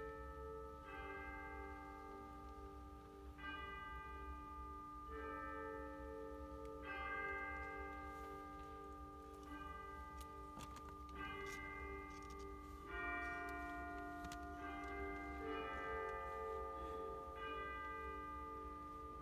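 Wind band in a soft, slow passage: bell-like tones, a new chord struck every second or two and left to ring, over quiet held lower notes.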